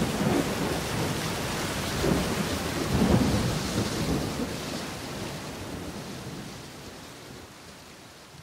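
Thunderstorm sound effect: steady heavy rain with low rolls of thunder, fading out gradually toward the end.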